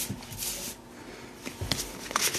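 A deck of tarot cards being handled: a papery rustle early on, with a light tap near the end as the cards are moved.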